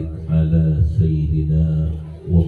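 A man's voice chanting Arabic religious recitation in long, held melodic notes, amplified through a handheld microphone.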